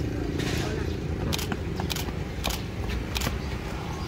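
Steady low rumble of a motor scooter engine idling, with a few short sharp scrapes or clicks over it.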